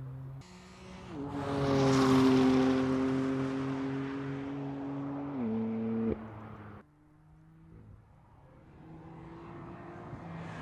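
Twin-turbo straight-six engine of a 2014 BMW M3/M4 at speed on a race track. Its note holds a nearly steady pitch for a few seconds, then steps higher just after five seconds. It cuts off abruptly between shots, and a quieter engine note builds near the end.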